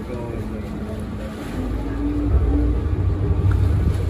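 Motorboat engine running under way, mixed with wind buffeting the microphone and water noise; the rumble grows louder about a second and a half in.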